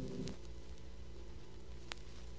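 A choir's held chord cutting off about a third of a second in, leaving the low hum and hiss of LP record playback with a few faint clicks and one sharp click near the end.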